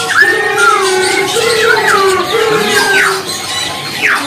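Caged laughingthrushes sold as Poksay Hongkong singing a run of loud whistled notes that slide up and down, over lower wavering notes.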